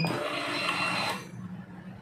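Automatic vacuum sealer's suction nozzle being driven out by its built-in mechanism at the press of the nozzle in/out button: a short mechanical whir lasting about a second, then fading.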